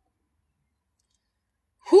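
Dead silence for nearly two seconds, then a woman's voice starts to speak right at the end.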